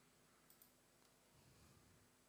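Near silence, with a couple of faint mouse clicks about half a second in.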